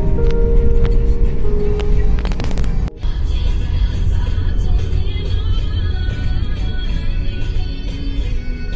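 Music with long held notes plays over the low rumble of a car on the road; just before three seconds in the sound briefly drops out, and after it the car's rumble is stronger under fainter music.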